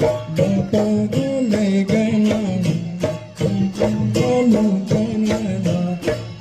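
Mising Gumrag folk dance music: a melody moving in short steps over a steady drum beat of about three strokes a second.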